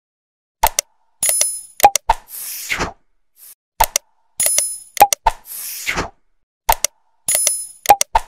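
Animated subscribe-button sound effects: a couple of sharp click pops, a bright bell ding and a whoosh, repeating as the same short pattern about every three seconds.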